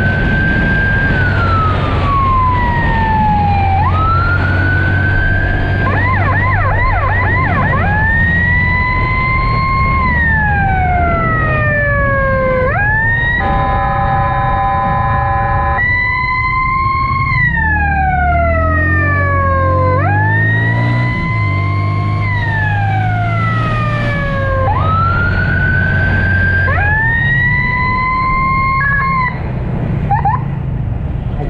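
Electronic emergency siren wailing, each cycle rising quickly then falling slowly over about three seconds. It switches to a rapid warble briefly about six seconds in, and a steady horn blast of about three seconds comes midway. A motorcycle engine runs underneath.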